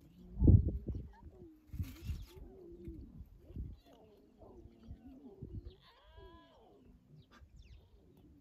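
Lion cubs mewing and whining in a string of short bending calls, with a longer falling mew about six seconds in. A loud low thump comes about half a second in.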